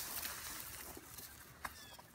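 Faint rustling and handling noise as the camera is moved against a jacket. The hiss fades over the two seconds, with a single click near the end.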